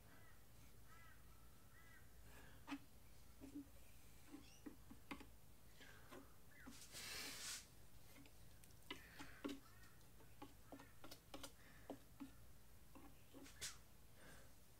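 Near silence with faint scattered clicks, taps and light scraping from a palette knife working black acrylic paint along a canvas edge, and a brief rustle about seven seconds in. Faint bird chirps in the first two seconds.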